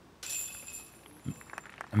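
A putter disc strikes a disc golf basket with a sudden metallic jingle of steel chains that rings out and fades over about half a second. The putt does not stay in.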